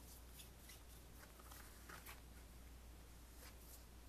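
Near silence with a few faint, soft ticks of sleeved trading cards being handled and laid down on a cloth playmat, over a low steady hum.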